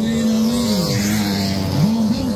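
A motorcycle engine running hard at high revs; its note drops about a second in and climbs back up near the end.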